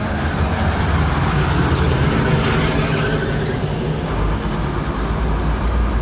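A city bus's engine running as it passes close by on the street, with a low hum that swells about a second in and eases off over the following seconds, over steady road traffic.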